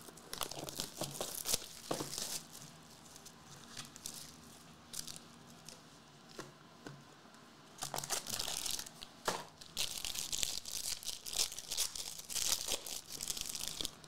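A trading-card pack being torn open by hand, its wrapper crinkling. There is some light handling at first, a quieter spell, then a long run of dense crinkling and tearing starting about halfway through.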